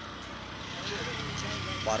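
A motor vehicle's engine running, a steady low rumble that grows slightly louder.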